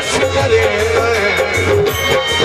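Live Punjabi folk song: a man sings a wavering melody with vibrato over sustained keyboard chords and hand-drum strokes.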